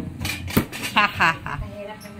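Clinks and clatter of metal kitchenware, with several sharp knocks in the first second.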